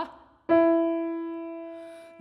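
C. Bechstein grand piano struck once, loudly, about half a second in, then left to ring and slowly die away.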